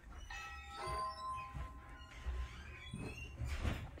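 An electronic door chime rings once: several tones sound together and fade over about a second and a half. Low rustling noise follows.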